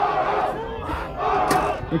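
A football team shouting together in unison from a huddle, two loud group shouts about a second apart.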